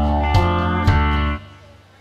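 Karaoke backing track with guitar and a beat about twice a second, stopping suddenly about one and a half seconds in: the wrong song has been cued.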